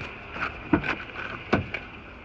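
Driver's door of a 2011 Lincoln MKX being opened by its handle: two sharp latch clicks a little under a second apart.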